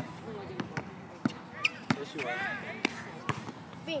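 A basketball dribbled on a hard outdoor court: about half a dozen sharp bounces at uneven spacing as the player moves with the ball.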